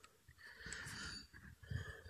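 Pen scratching faintly on notepad paper while drawing strokes of a letter: one stroke of about a second near the start, a shorter one near the end.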